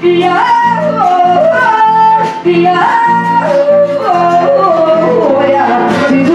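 A woman singing into a microphone, her melody gliding between long held notes, over an acoustic guitar strummed in a steady, even rhythm.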